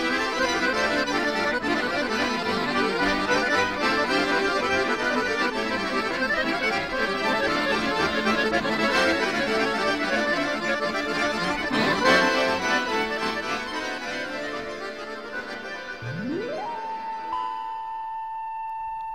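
Accordion music, dense and crowded, as if several accordion tunes were playing at once. Near the end the music fades out and a single tone sweeps up in pitch and holds steady.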